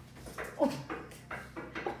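A dog whining and yelping in a quick string of short calls, each falling in pitch.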